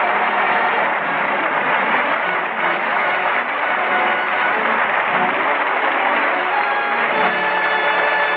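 Studio audience laughter and applause running under a musical bridge that ends the scene, in an old radio broadcast recording with a dull, narrow sound. The music's held notes come through more clearly near the end.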